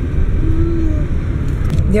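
Car cabin rumble while driving: a steady low noise from the engine and tyres on the road.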